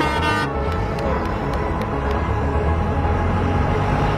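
A vehicle horn toots briefly at the start as a city bus pulls away, then the bus engine rumbles steadily as it drives past close by.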